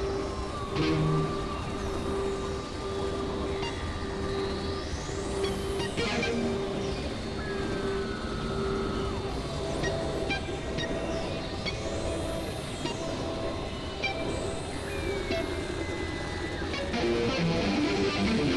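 Experimental electronic drone music: a steady synthesizer drone over a bed of noise, with high tones that glide up and back down every few seconds and a few slower falling glides.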